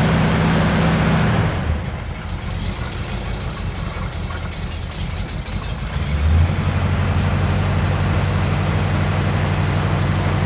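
Ford Torino's V8 engine idling steadily. About two seconds in it settles to a lower, quieter idle, and just after six seconds it picks back up with a brief surge. It runs with an exhaust leak that is better than it was but not cured.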